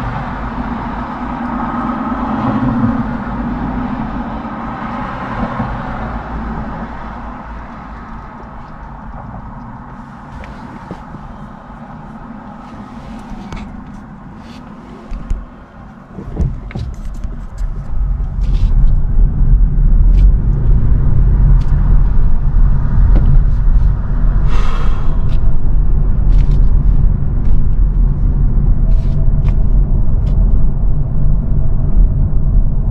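Car waiting at a traffic light with cross traffic passing in front, then pulling away and driving on, heard from inside the car. About halfway through, the steady low rumble of engine and tyre noise rises sharply and stays loud.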